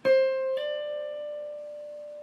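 Electric guitar, played clean: one note picked on the B string at the 13th fret, then hammered on to the 15th fret about half a second in, a step higher. The higher note rings out and slowly fades.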